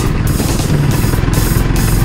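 Honda CBR250R's single-cylinder engine running steadily while riding uphill, with background music laid over it.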